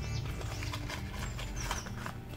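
Soft, scattered taps and rustles of small paperboard paint boxes and watercolour tubes being handled on a tabletop.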